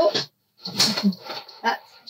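A woman coughing: a short run of a few coughs starting about half a second in and lasting about a second.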